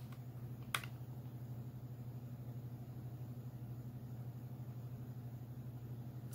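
Quiet room tone: a low, steady electrical hum with a fast, even flutter, broken by a single short click about a second in.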